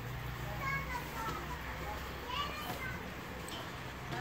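Faint voices of children calling and talking, over a steady low hum.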